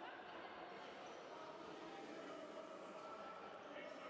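A handball bouncing on the wooden court of a sports hall, with players' and spectators' voices echoing in the hall.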